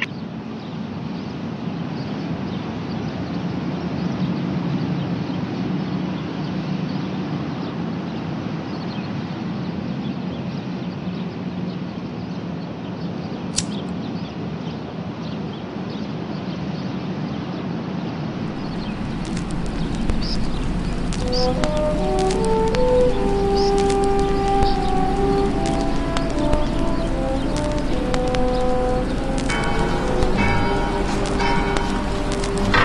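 Steady low background noise, then about two-thirds of the way through a vinyl record starts playing on a turntable: a low hum and surface crackle come in, followed by an instrumental melody from the record.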